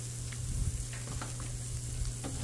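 Ground beef and pork meatloaf patties sizzling on a hot flat-top griddle: a steady, faint frying hiss over a low hum, with a few faint clicks.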